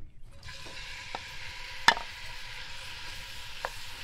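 Diced raw chicken dropped into a hot pan and sizzling, the frying hiss starting about half a second in and then holding steady. A single sharp knock just before the two-second mark is the loudest sound, with a couple of lighter clicks either side.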